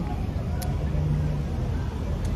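Low, steady rumble of street traffic, with a brief low hum near the middle.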